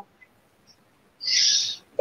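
Silence, then a short hiss a little over a second in, lasting about half a second.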